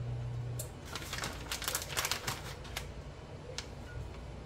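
Plastic bag of shredded cheddar crinkling and rustling as the cheese is shaken out, a run of quick light clicks that is thickest in the middle. A low steady hum stops under a second in.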